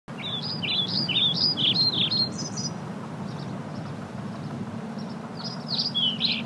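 A bird singing quick chirps that rise and fall, repeated rapidly through the first two and a half seconds and again near the end, over a steady low hum of outdoor background noise.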